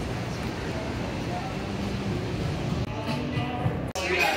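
City street noise: a steady low rumble of traffic. Indistinct voices and music come in during the last second or so.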